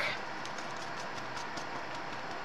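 Steady low background noise of the room, with a few faint light clicks.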